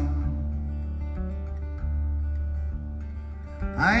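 Solo acoustic guitar playing between sung lines, low notes ringing and re-struck about every second. A man's singing voice comes back in just before the end.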